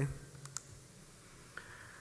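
Two short, faint clicks about half a second in, during a quiet pause between spoken sentences.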